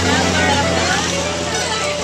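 Several people talking and chattering together, over a steady low rumble that fades near the end.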